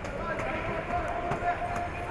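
Competition-hall ambience: indistinct shouting voices from coaches and spectators over a steady crowd hubbub, with scattered short knocks and thumps.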